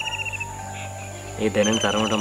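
A cricket trilling, a high, fast-pulsing tone that stops about half a second in and starts again about a second later.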